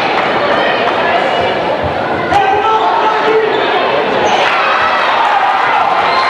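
Basketball bouncing on a hardwood gym floor over the steady chatter of a crowd in the stands, with a sharp, louder bang a little over two seconds in.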